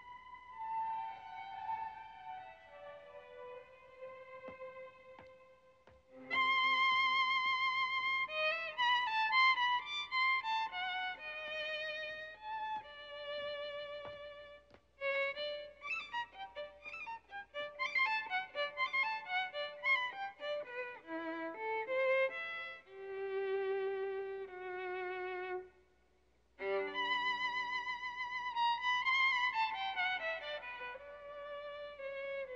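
Solo violin playing a melody with vibrato. It starts softly, grows much louder about six seconds in, moves through quick runs of notes in the middle, and stops briefly before resuming near the end.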